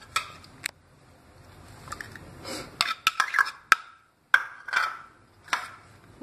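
Spoon knocking and scraping against a bowl as a paste is spooned onto sliced raw bananas: scattered separate clinks, with a busier run of knocks and scrapes about halfway through.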